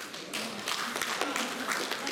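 A small group of people clapping their hands in scattered applause, starting about a third of a second in.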